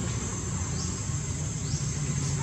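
Steady high-pitched drone of insects in the forest, with a low rumble underneath and two short rising chirps, one about a second in and one near the end.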